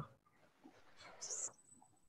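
Near silence on the call, broken by one faint short hiss about a second in and a faint, steady high-pitched tone near the end.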